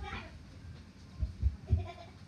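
A brief voice sound right at the start, then three dull low thumps in quick succession a little past the middle, the last joined by a short voiced note.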